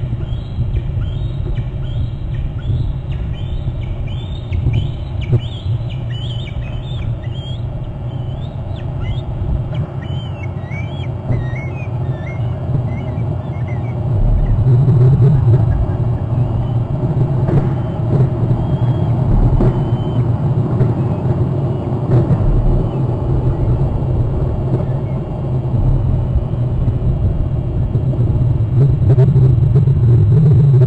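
Bald eagle calling: a run of high, thin whistled notes repeated every second or less, fading out about twelve seconds in. Under it runs a steady low rumble that grows louder about halfway through.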